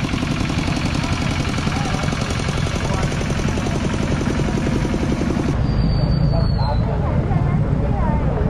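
Single-cylinder diesel engine of a two-wheel 'scissor' tractor running with a fast, even chugging knock as it tows a loaded passenger trailer. About five and a half seconds in, this gives way abruptly to a lower, smoother vehicle rumble with voices.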